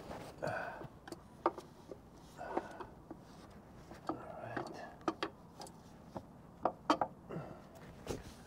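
Scattered light metal clicks and knocks, with rustling between, as the timing gear cover of a Volvo D13 diesel engine is handled and fitted against the engine's front.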